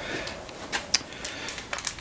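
Quiet room noise with a few faint clicks or rustles scattered through it.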